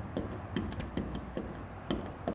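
Screwdriver driving a grounding screw into a freshly tapped hole in a steel switch box: a series of light, irregular metallic clicks as the screw is turned down tight.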